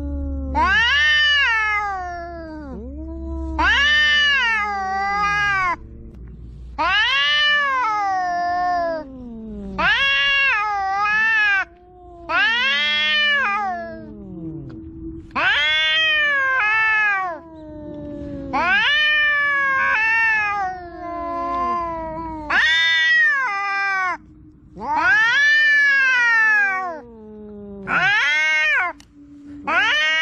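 Two cats, an orange-and-white and a pale colourpoint, caterwauling at each other in a threat standoff: long, wavering yowls that rise and fall in pitch, about one every two to three seconds, with a low steady tone held under them in the second half.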